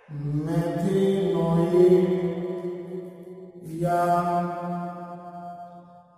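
A man's voice drawing out words in long, level, chant-like tones as he dictates what he is writing. There are two long held stretches, the second starting a little under four seconds in.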